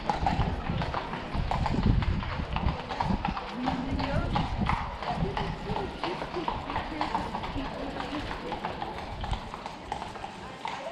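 Irregular clip-clop of hard steps on stone paving, with voices in the background.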